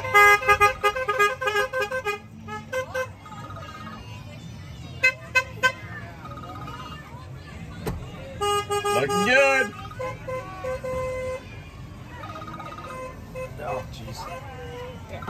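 Golf cart horns honking: a rapid string of short toots in the first two seconds, a few brief beeps after, and a longer honk about eight to ten seconds in.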